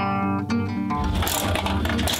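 A short intro jingle of plucked, guitar-like string notes. About a second in it gives way to a fuller, noisy room sound with a low rumble.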